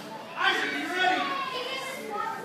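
Children's voices in a large hall: an audience of kids talking at once, with no clear words, starting about half a second in.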